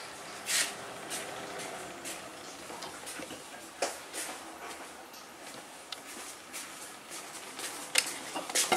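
Halogen convection oven running with its lid on: a steady fan whir, with a few light clicks.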